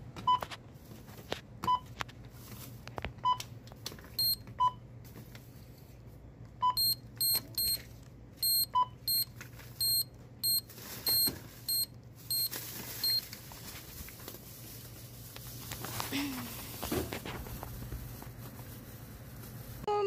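Checkout-lane electronic beeps: a lower beep every second or two, as items are scanned at the register, and a quicker run of short, higher key beeps from the iSC Touch 480 card reader's PIN pad from about four to thirteen seconds in, as a phone number is keyed in for digital coupons.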